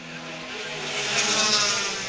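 Pack of pure stock race cars at speed passing by, several engine notes layered together with a slight drop in pitch. The sound swells to its loudest about a second and a half in, then starts to fade.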